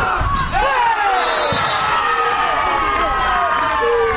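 Players and spectators shouting and cheering at an amateur football match, with one long, slowly falling shout as a goal is celebrated. A sharp thump about a third of a second in.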